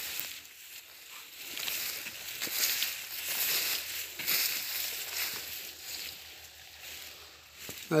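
Footsteps brushing through tall dry grass, a rustling that rises and falls with the walking, and a man's voice starting right at the end.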